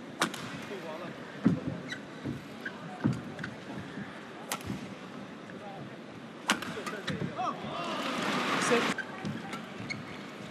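Badminton rally: crisp racket strikes on the shuttlecock about every second and a half. From about six and a half seconds in, the arena crowd noise builds through a long exchange and drops away sharply near the end as the point is won, with a short exclaimed "Oh".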